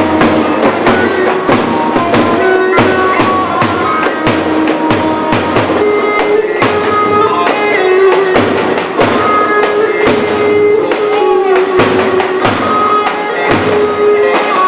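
Live Turkish halay dance music, amplified through a loudspeaker: a davul bass drum beats a steady rhythm under a melody of long held notes.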